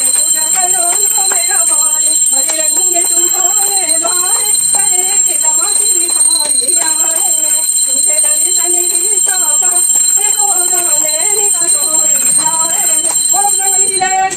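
Voices singing a Hindu aarti for Lakshmi puja, with hands clapping along and a steady high-pitched ringing like a bell beneath it.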